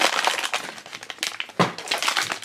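Thin plastic bag of a blind-box toy crinkling and crackling as hands handle and open it, in irregular bursts, loudest right at the start and again about one and a half seconds in.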